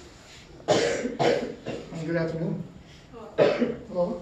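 A person coughing and clearing their throat: harsh bursts about a second in and again near the end, with a brief muffled voice between.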